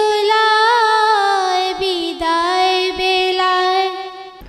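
Girls' voices singing a Bengali Islamic ghazal unaccompanied, in long held notes with a slight waver and gentle steps in pitch.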